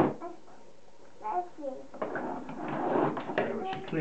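A toddler's voice babbling and vocalising without clear words, after a short knock at the start.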